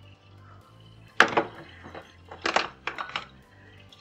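Soft background music with low, steady notes, under a few sharp handling clicks and crinkles from a pH 10 calibration-solution sachet being opened. The loudest click comes about a second in, and a cluster of smaller ones follows near the end.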